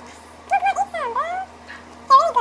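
High-pitched vocal sounds with gliding, wavering pitch, in short phrases about half a second to a second and a half in.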